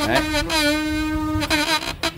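Sonic electric toothbrush running: a steady, even buzz that returns about half a second in and cuts off abruptly around a second and a half in.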